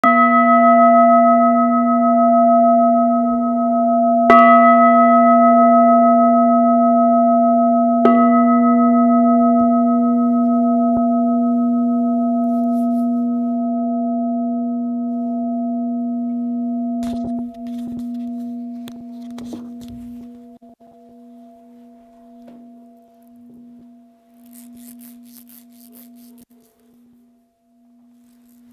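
A Buddhist altar bowl bell struck three times about four seconds apart, its deep, many-toned ring fading slowly over some twenty seconds. A few soft knocks and rustles come as the ringing dies away.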